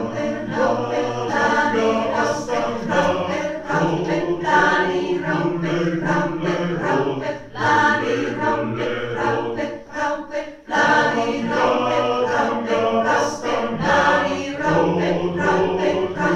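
A mixed choir of men's and women's voices singing a cappella from sheets, in phrases, with brief breaks for breath about seven and a half and ten and a half seconds in.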